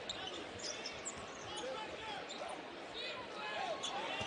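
Basketball being dribbled on a hardwood court, with scattered short sneaker squeaks over arena crowd noise.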